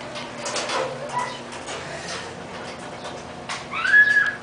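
Five-week-old Siberian husky puppies whimpering: a few short high whines about a second in, then a louder whine that rises and holds near the end, with some rustling around them.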